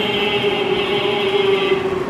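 A man's voice chanting a devotional salam to the Prophet Muhammad into microphones, holding one long, steady note.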